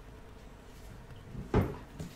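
A single sharp wooden knock about one and a half seconds in: the online chess board's piece-move sound as the king is moved.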